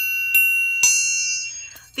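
Orchestral triangle struck three times in the first second with a metal beater, each strike ringing with several high tones that fade out by near the end.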